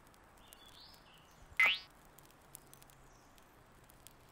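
Quiet outdoor background with faint bird chirps, broken about a second and a half in by one short, sharp chirp that rises quickly in pitch.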